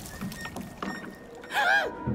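Quiet water sounds with a couple of light knocks. Then, about one and a half seconds in, a short, trembling, wavering whimper from a frightened cartoon character who is in the water.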